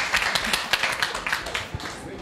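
Audience applauding: a dense patter of many hands clapping that thins out and fades near the end.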